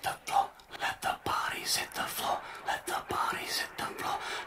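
A whispered voice speaking in short, broken phrases: the quiet spoken opening of a song.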